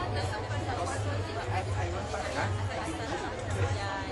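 Several people chatting at once, with indistinct overlapping voices and a low hum underneath.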